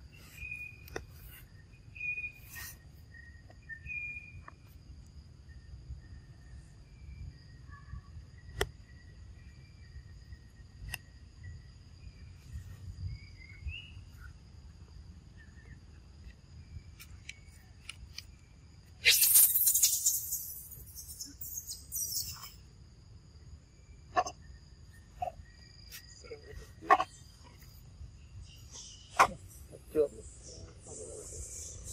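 Forest ambience: a steady high-pitched insect drone with a few short bird chirps, broken by scattered sharp clicks. About two-thirds through, a loud rustling hiss lasts about a second and a half.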